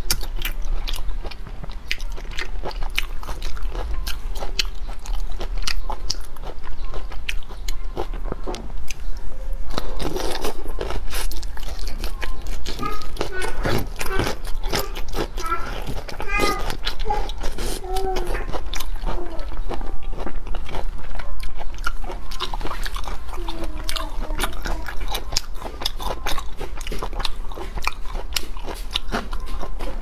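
Close-miked eating of whole soy-marinated shrimp: many sharp, wet clicks of biting, crunching shell and chewing throughout. A voice is heard briefly in the middle.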